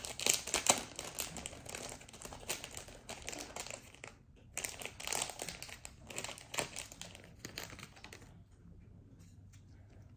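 Clear plastic wrapping crinkling and crackling as a pair of Pokémon TCG tokens is unwrapped by hand. The crackles are thick for about the first eight seconds, then thin out.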